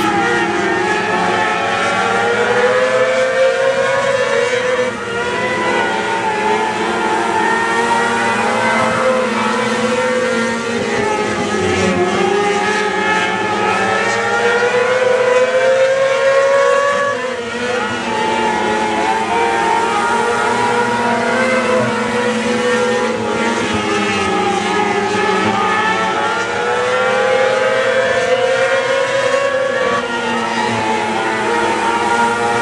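A pack of 600cc open-wing micro sprint cars racing on a dirt oval, their high-revving motorcycle-based engines running together as one continuous sound. The pitch climbs and falls off again every few seconds as the cars come round the track.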